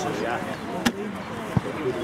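Players shouting across a rugby pitch, with two sharp knocks, the first just under a second in and a duller one about two-thirds of a second later.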